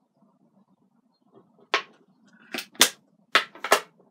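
Makeup items and a brush being handled and set down on a desk: about five sharp clicks and knocks in the second half, the loudest near the end.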